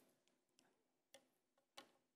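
Near silence: room tone with two faint clicks in the second half.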